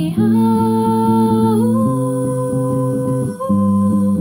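A woman singing a wordless, long-held melody over an electric bass guitar. The voice steps up in pitch near the start and again a little before two seconds in, and the bass changes note just before two seconds in and again a little after three seconds.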